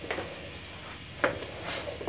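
A few light knocks and handling sounds in a small room, the loudest about a second in.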